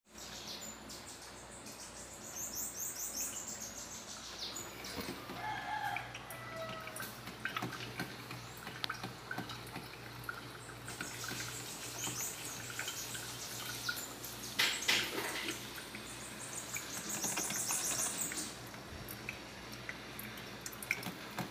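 Birds chirping in repeated bursts with a rooster crowing, over a low steady hum and the gurgling of an electric drip coffee maker brewing.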